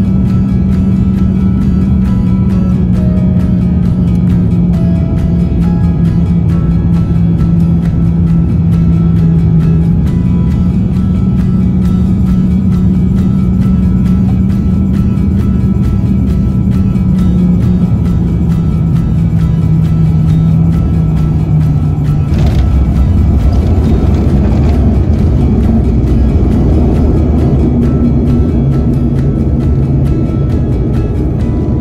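Background music over the steady drone of an airliner's engines heard from inside the cabin on final approach. About two-thirds of the way through, the drone's steady tone drops away and a heavier low rumble takes over as the aircraft touches down on the runway.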